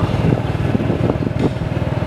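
Motorbike engine running steadily while riding along a street, heard from on the bike.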